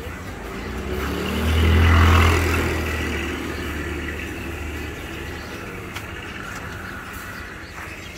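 A motor vehicle passing close by: its engine hum swells over the first two seconds, then fades away by about five seconds in.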